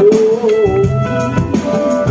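Live rock band playing through a festival PA: electric bass and guitar with sustained organ-like keyboard chords, a held note bending slightly in the first second.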